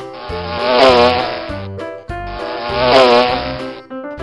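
Wasp buzzing sound effect, played twice, each buzz about a second and a half long with a wavering pitch, over background music.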